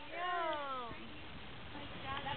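A cat meowing once, a single call that falls in pitch over about a second.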